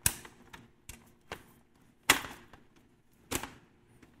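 Ferno PediPal folding child seat being unfolded into a car seat, its frame clicking into place: a sharp click at the start, another about two seconds in and a third a little after three seconds, with fainter knocks between.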